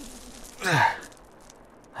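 A man lets out one sigh of relief, falling in pitch, about half a second in. A few faint clicks follow.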